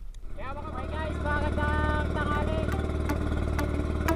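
A boat engine drones steadily as the outrigger boat moves under way. Over it a pitched voice glides up about a quarter second in and then holds its notes.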